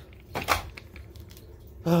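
A couple of brief knocks and rustles of things being handled, about half a second in, then a woman starts speaking near the end.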